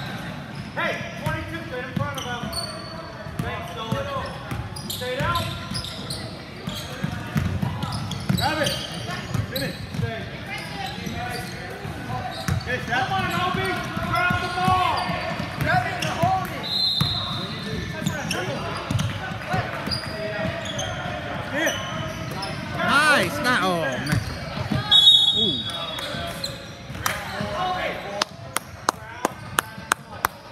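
Game sounds of indoor basketball in a large gym: players' and spectators' voices calling out, a few sneaker squeaks on the hardwood, and the ball bouncing, with a quick run of bounces near the end.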